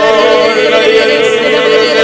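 Voice praying in tongues in a sung, chant-like stream of syllables with a wavering held pitch, over background music.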